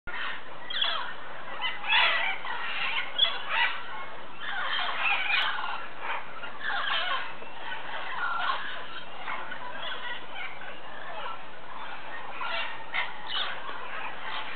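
A large flock of parrots calls at a clay lick: a continuous chorus of many overlapping calls, louder in clusters. A single short click sounds about three seconds in.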